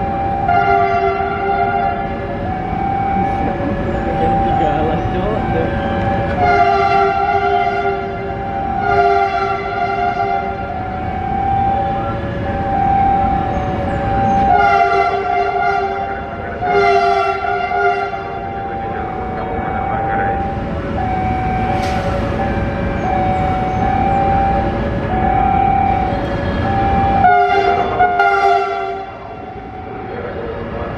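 INKA CC 300 diesel-hydraulic locomotive sounding its multi-tone horn as it approaches: about six long blasts, with a single steadier note held between them through the middle, over a low engine rumble.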